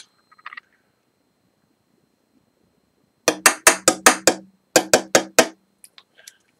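Near silence, then about halfway in a quick run of about ten sharp taps, roughly four a second, over a low steady hum.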